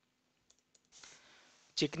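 A few faint clicks from a computer about half a second in, followed by a soft hiss, with a man's voice starting to speak near the end.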